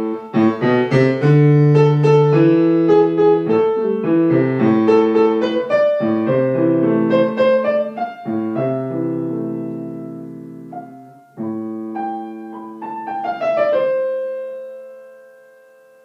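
Acoustic piano played with a quick run of notes over the first half, then slower sustained chords, ending on a final chord that rings and fades away near the end.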